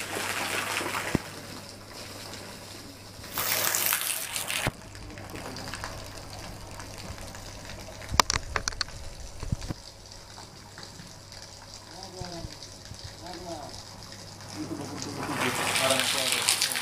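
Water gushing steadily from a PVC pipe outlet into a catfish pond, refilling it with fresh water as the old water is changed. The rush is loudest for about a second near four seconds in, with a few sharp knocks about eight seconds in.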